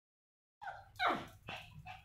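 Small white spitz-type dog giving four short, excited barks starting about half a second in; the second bark is the loudest and falls in pitch. It is excited in anticipation of being fed.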